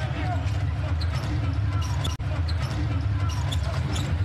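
Basketball arena crowd noise, a steady low rumble, with a basketball bouncing on the hardwood. About halfway through the sound cuts out for an instant and comes straight back.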